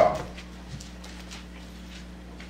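A congregation getting to its feet from wooden pews: faint shuffling, clothing rustle and small creaks and knocks over a steady low hum.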